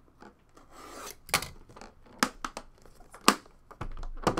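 Scraping and rubbing along the side of an aluminium card briefcase as a small tool is worked along its seam, with a few sharp clicks and knocks of the metal case being handled, the loudest about three seconds in.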